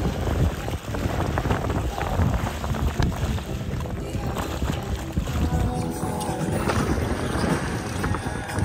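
Wind buffeting the microphone and water rushing and slapping along the hulls of a Hobie 16 sailing catamaran in choppy seas, a dense, uneven noise, with background music laid over it.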